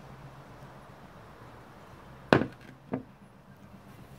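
A glass of beer set down on a table: one sharp knock about two seconds in, then a lighter knock half a second later, over a faint steady hum.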